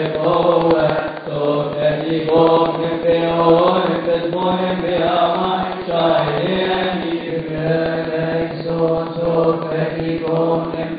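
Coptic Orthodox liturgical hymn chanted, with long drawn-out melismatic notes that slide from pitch to pitch without pause.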